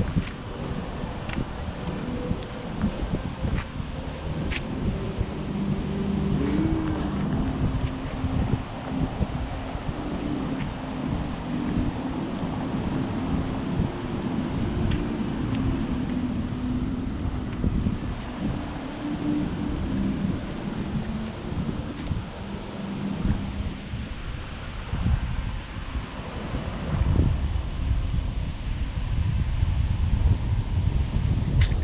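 Wind buffeting the microphone on a walk outdoors, with leaves rustling. A low steady hum runs underneath from about five seconds in until past twenty seconds, and the wind rumble grows stronger near the end.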